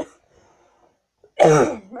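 A woman coughing: a brief catch at the very start, then one loud cough about a second and a half in.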